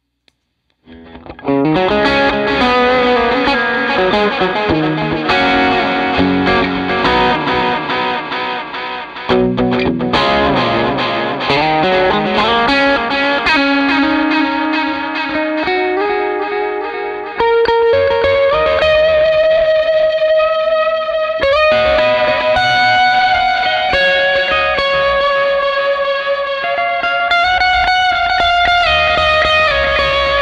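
Electric guitar played through a Catalinbread Belle Epoch, an Echoplex-style tape-echo delay pedal, its notes trailed by delay repeats. The playing starts after about a second of silence, and louder new phrases come in about nine and seventeen seconds in.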